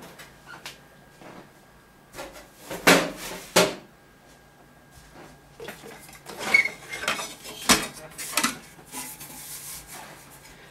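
Sheet-metal rear shield of an LCD TV being handled and lifted off: a series of sharp metallic knocks and clatters, two loud ones about three seconds in and a cluster more a few seconds later.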